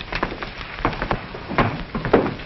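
A handful of light, irregular knocks or taps, about six in two seconds, over the hiss of an old film soundtrack.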